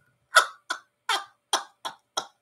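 A person coughing: a run of about five short, dry coughs, a little under half a second apart.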